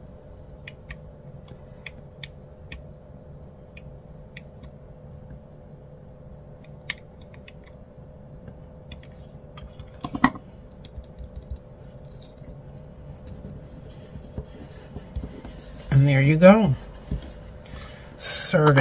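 Soft, scattered ticks and light scratching of stickers being peeled and pressed onto a paper planner page, over a faint steady hum. A brief louder sound comes about ten seconds in, and a short bit of voice near the end.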